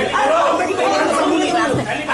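Several people talking over one another in a busy, jumbled chatter of voices.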